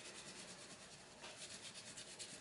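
Faint scratching of a wax crayon on paper in quick, repeated back-and-forth strokes as an area is coloured in.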